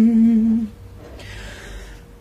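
Man singing a Nepali song unaccompanied, holding one long steady note that ends about two-thirds of a second in, followed by a pause.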